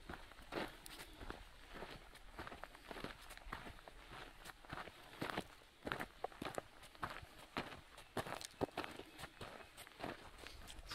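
Footsteps of one person walking on a dirt and gravel track, each step a short crunch.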